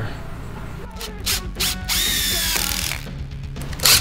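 Cordless drill running in a short burst about halfway through, its whine falling slightly in pitch as it drives into the wood, with a couple of sharp knocks of wood being handled before it. Background music plays underneath.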